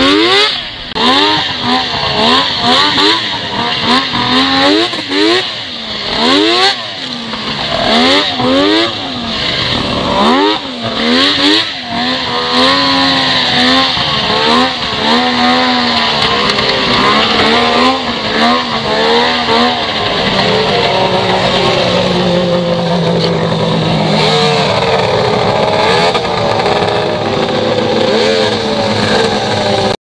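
Yamaha 700 triple two-stroke snowmobile engine under way, the throttle opened and closed over and over so its pitch rises and falls repeatedly. About twenty seconds in it settles to a steadier, lower running sound as the sled slows.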